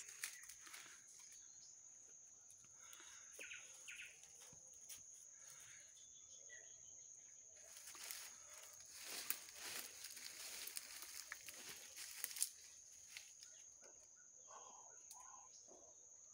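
Quiet rainforest ambience: a steady high-pitched insect drone, with scattered rustling, busiest in the middle, and faint voices near the end.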